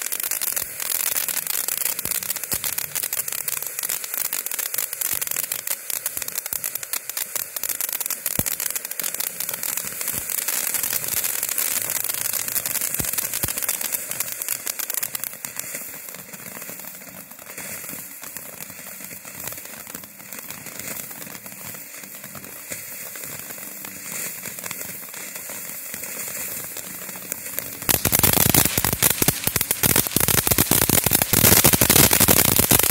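Boomer Fireworks Whistling Color Cuckoo ground fountain burning, a dense steady crackle and hiss of sparks; the whistle it is named for never sounds. The crackle eases somewhat in the middle, then grows sharply louder about two seconds before the end.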